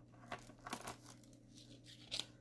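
Faint rustling and a few small clicks of things being handled and moved about on a desk, over a low steady room hum.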